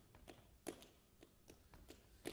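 Near silence broken by faint, irregular taps of a flamenco dancer's shoes on the stage floor, about ten in two seconds.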